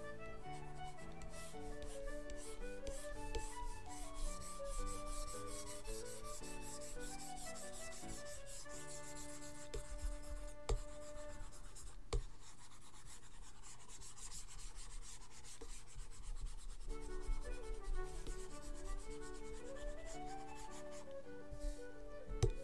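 Stylus nib rubbing and scratching across a drawing tablet in repeated strokes, with a couple of sharp taps near the middle. Concertina background music plays underneath.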